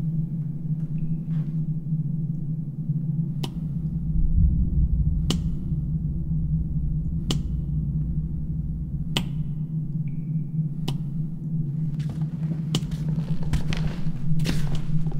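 Sharp, single taps about every two seconds over a steady low hum. The taps come quicker and closer together near the end.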